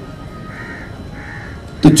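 Two faint bird calls in quick succession during a pause in speech; a man's voice starts again at the very end.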